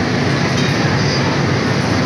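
Steady, loud rushing hum of machinery on a garment factory's pressing floor, from the suction blowers of vacuum ironing tables and the steam irons in use at them.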